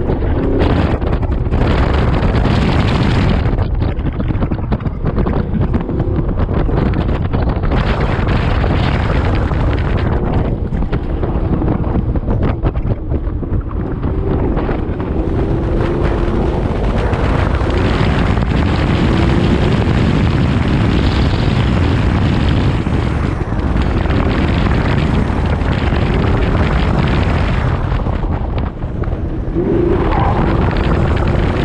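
Car engine revving up and down as it is driven hard through an autocross course, its pitch rising and falling with the turns, under heavy wind noise on an outside-mounted microphone.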